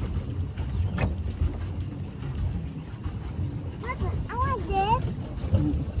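Low, steady rumble of wind on the microphone and water around a small plastic boat out on a lake, with a brief high-pitched voice calling about four seconds in.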